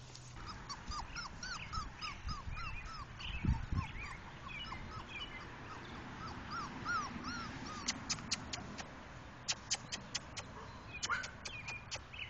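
Four-week-old English Pointer puppy whimpering: a string of short, high, arching whines, several a second, through most of the first eight seconds. A run of sharp clicks follows near the end.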